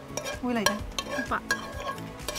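A metal utensil scraping and clinking against a frying pan as cooked filling is scraped out of it, with several sharp clinks. Brief gliding voice sounds are heard over it.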